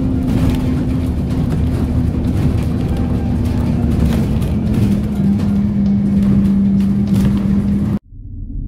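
Engine and road rumble heard from inside a moving road vehicle, with a steady engine hum that drops to a lower pitch about four seconds in.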